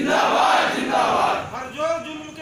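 A crowd of protesters shouting a slogan together in one loud burst, answering a leader's call, then a single man's voice calling out again near the end.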